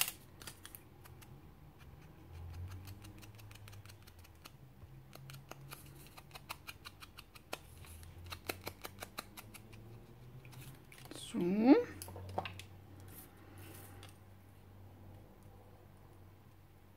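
Soft, quick taps of a small foam ink dauber on an ink pad and against the edges of a cardstock piece, coming in bursts of light clicks, with paper being handled. A short wordless vocal sound about two-thirds of the way through.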